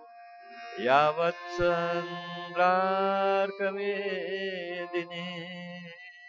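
A man chanting a Sanskrit verse (shloka) to a slow, drawn-out melody over background music. His voice slides up about a second in and then holds long notes.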